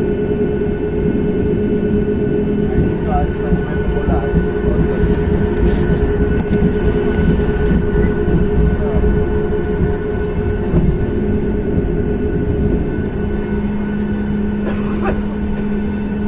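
Jet airliner cabin noise while taxiing after landing: the engines' steady hum over a constant low rumble, heard from inside the cabin. A few short clicks near the end.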